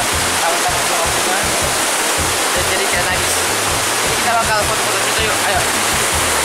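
Waterfall rushing steadily, a dense even roar of falling water with no break.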